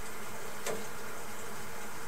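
A steady buzzing hum with one brief click about two-thirds of a second in.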